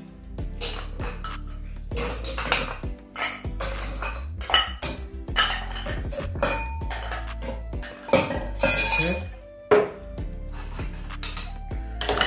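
Ice cubes clinking into a glass mixing glass as they are dropped in with metal tongs, many irregular clinks a second with short pauses, over background music.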